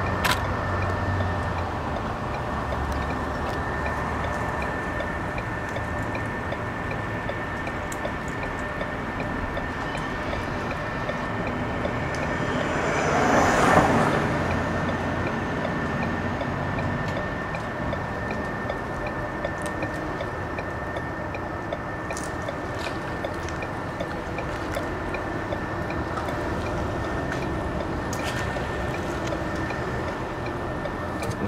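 Steady traffic and road noise heard from inside a car, with a thin steady whine running under it. About fourteen seconds in, a vehicle passes close by, its noise swelling and then fading.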